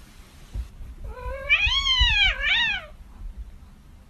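A kitten meowing once, a drawn-out call lasting nearly two seconds that rises in pitch, dips and rises again before breaking off.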